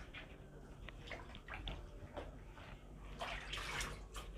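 Hands handling fabric and a tape measure on a table: light, scattered rustles and small taps, with a louder rustling swish of the cloth a little after three seconds.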